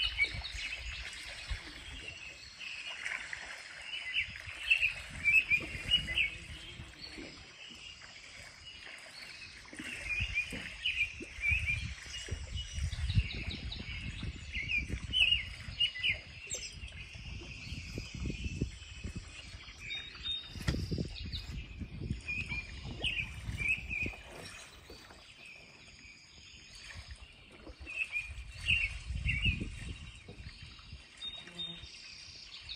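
Small songbird singing short chirping phrases over and over, about one every one to two seconds, with low rumbles coming and going underneath.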